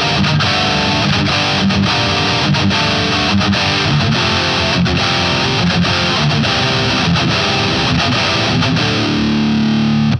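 Distorted Jackson electric guitar in drop D playing a metal rhythm riff of suspended, minor and major chord shapes, chugging chords with short regular stops. About nine seconds in it settles on a held chord that is cut off at the end.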